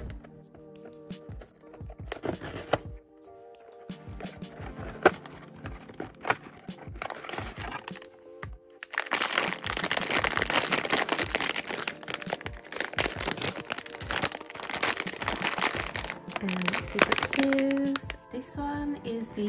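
A cardboard blind box being opened, with scattered clicks and scrapes over soft background music; then, from about nine seconds in, the box's silvery plastic inner bag crinkling loudly as it is opened and unwrapped.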